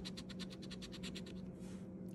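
A coin scratching the silver coating off a scratch-off lottery ticket in rapid, quick back-and-forth strokes that ease off near the end.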